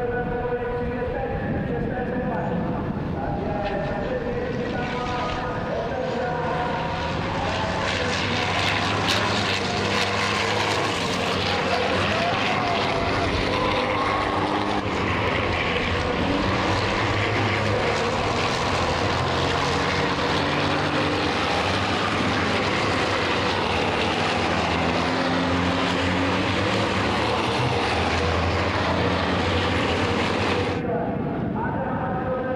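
A pack of racing trucks' big turbo-diesel engines running hard around the circuit, several at once, their pitch climbing in steps through gear changes.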